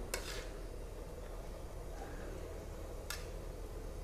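Two metal spatulas stirring chopped pork in a large metal wok, scraping against the pan, with two sharper metal scrapes: one right at the start and one about three seconds in. A faint steady sizzle of frying runs underneath.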